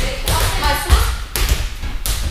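Small rubber balls bouncing on padded judo mats: a few dull thuds, the loudest about a second in.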